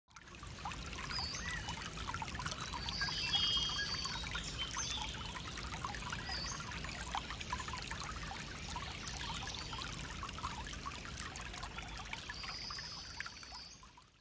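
Small stream of water trickling and splashing over wet needles and rock, with a few short high whistles over it now and then. It fades out at the very end.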